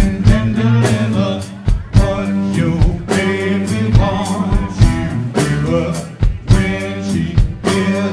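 Live funk-rock band playing: a drum kit keeps a steady beat under electric guitar and keyboard chords.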